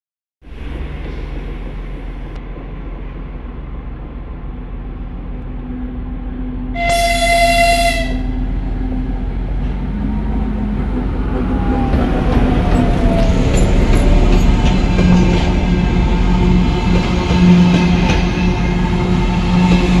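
M62 diesel locomotive's two-stroke V12 diesel engine, droning louder and louder as it approaches. About seven seconds in there is one horn blast lasting about a second. In the last seconds the engine and the freight wagons' wheels pass close by at the loudest.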